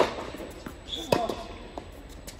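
Tennis ball being struck and bouncing during a rally: two sharp hits, one at the start and one about a second in, each ringing out in the large indoor court hall.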